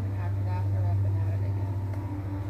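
A steady low hum, like an idling engine, that swells slightly about a second in, under faint background voices.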